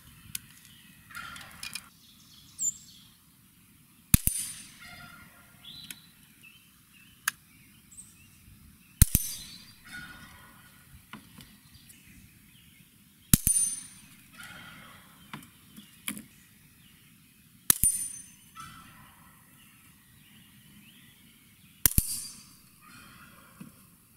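Five shots from a bolt-action .22 rimfire rifle firing low-velocity .22 Short cartridges at about 500 to 560 fps, spaced four to five seconds apart. Quieter clicks and rattles of the bolt being worked and a fresh round loaded come between the shots.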